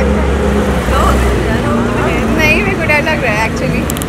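Street noise: a steady low engine rumble from a nearby road vehicle that drops away about a second and a half in, with people's voices over it.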